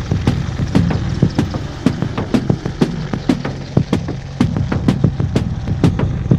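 Low-flying AH-64 Apache attack helicopters: steady rotor and turbine drone with repeated thuds, two or three a second.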